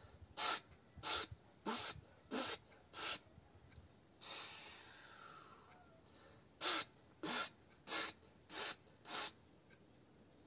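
A person doing a breathing exercise: five short, forceful exhales about two-thirds of a second apart, then one longer breath, then five more short exhales.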